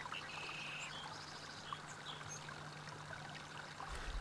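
Faint running water from a stream, with a short high bird call that starts a moment in and lasts about a second, over a low steady hum.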